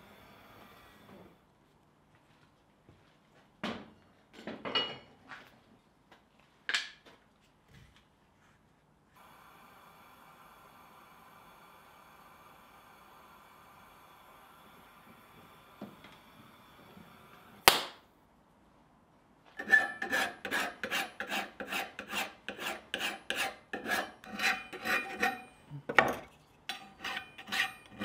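Gas torch hissing steadily during brazing, broken by a few scattered clicks and one sharp click. About twenty seconds in, a hand file starts rasping back and forth across the brazed steel joint of the handle rods and plate, about two strokes a second, and these strokes are the loudest part.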